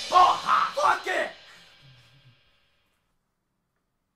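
End of a punk rock song: the last of the music rings out faintly while a voice calls out a few short words in the first second or so. The sound stops about two seconds in.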